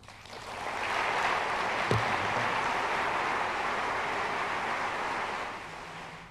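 Audience applause: it swells over the first second, holds steady, and fades away near the end.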